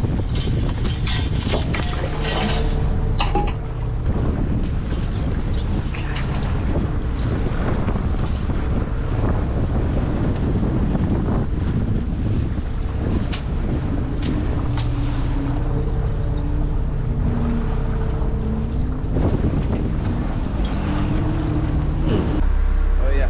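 Wind buffeting the microphone over the steady drone of a fishing boat's engine and the wash of choppy water along the hull, with scattered short clicks and knocks.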